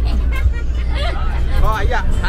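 Several passengers, children among them, chattering and laughing inside a moving bus, over the bus's steady low rumble.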